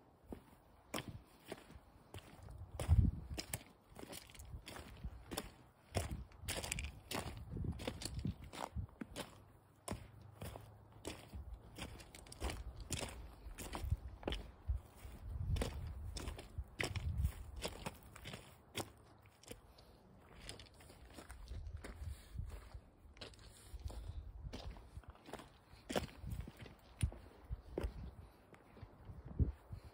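Footsteps on a loose stony, gravelly path, each step a short crunch, at a walking pace of about two steps a second, over a low rumble.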